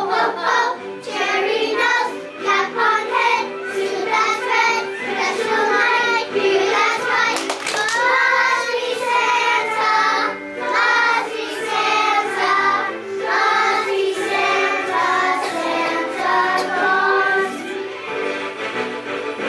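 A group of young children singing together in unison over instrumental music.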